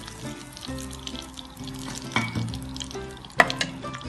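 Chicken pieces deep-frying in hot oil, a steady sizzle, with the slotted spoon knocking sharply against the pan about three and a half seconds in. Faint background music plays underneath.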